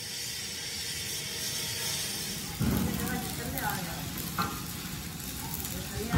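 Electric arc welding: a steady sizzling crackle, growing louder and fuller about two and a half seconds in, with a sharp click midway.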